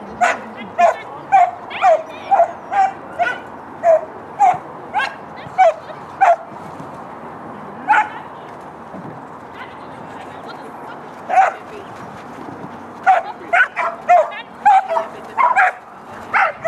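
A dog barking in short, sharp barks, about two a second at first, then only now and then in the middle, and quickly again near the end.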